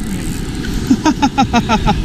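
Steady low rumble of wind and surf on the microphone. About a second in, a man laughs in a quick run of short chuckles.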